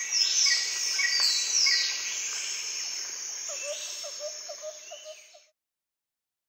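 Several birds chirping and calling, with high falling whistles and a quick run of short lower notes near the end, the whole fading out to silence about five seconds in.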